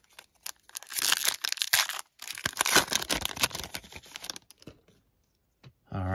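A foil trading-card pack wrapper being torn open and crinkled by hand, in two stretches of crackly rustling: one starting about a second in, the other from about two to four and a half seconds.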